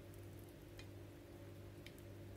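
Near silence: a faint steady low hum with two faint ticks about a second apart.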